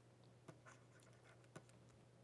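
Near silence with a few faint taps and scratches of a stylus writing on a tablet screen.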